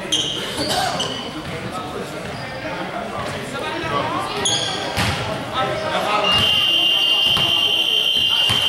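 A basketball bouncing on a hardwood gym floor, with players' voices echoing in the hall. From about six seconds in, a long, steady, high-pitched tone sounds over them.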